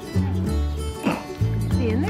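Background music with held bass notes. A standard poodle puppy gives a short high yip about a second in, and another near the end.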